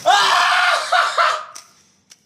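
A small group of people screaming together in shock, lasting about a second and a half before it stops abruptly.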